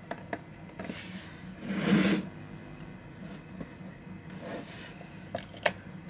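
Motorized display turntable running with a faint, steady low hum as it spins a platform of small toy cars. A few light clicks come through, with a brief louder burst of noise about two seconds in.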